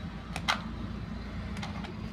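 Short clicks from a plastic toy RC jeep set, one about half a second in and a weaker cluster near the end, over a low steady hum.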